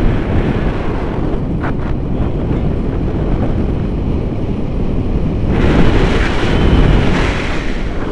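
Wind buffeting the camera's microphone in flight under a tandem paraglider: a loud, steady rumble that swells about six seconds in and eases near the end.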